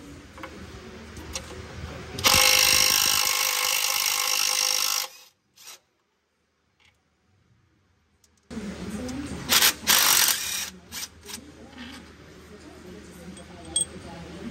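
Cordless DeWalt power tool running bolts out under the truck: one steady spin of about three seconds, then after a break a few short, loud bursts.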